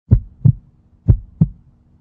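Heartbeat sound effect: two lub-dub double thumps, about a second apart, laid in to mark nervousness.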